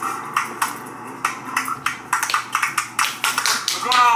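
A run of sharp, irregular hand claps, coming faster toward the end.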